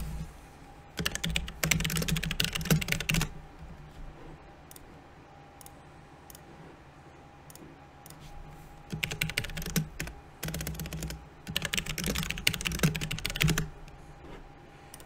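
Typing on a computer keyboard in two bursts of rapid keystrokes, the first about a second in and the second from about nine seconds to near the end, with a pause between.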